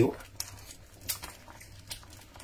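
Mostly quiet, with about three faint short clicks and mouth sounds as the sweet corn pudding is tasted off a spoon.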